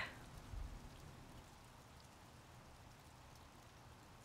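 Faint, steady hiss of rain mixed with wet snow falling on a lawn and pavement, with a brief low bump about half a second in.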